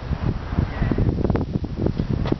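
Wind buffeting the camera microphone, an uneven low rumbling noise that comes and goes in gusts.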